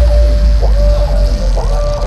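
Loud electronic bass music over a festival sound system: a heavy, steady sub-bass under a synth lead that swoops up into held notes.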